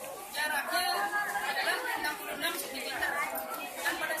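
Chatter: several young people talking over each other, no clear words.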